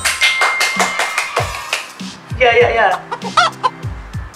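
Short intro jingle: backing music with a quick run of hand claps, then a cartoon chicken clucking sound effect in the second half.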